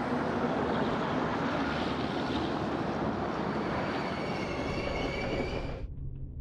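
Heavy vehicle traffic or a passing train making a loud, steady rumble, with a faint high squeal in the last few seconds; the sound cuts off abruptly just before the end.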